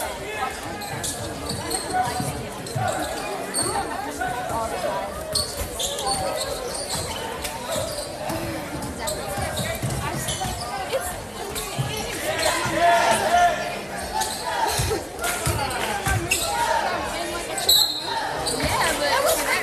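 Basketball bouncing on a hardwood gym floor, with short knocks as it is dribbled, over the chatter and shouts of players and spectators in a large gym. The voices grow louder about twelve seconds in.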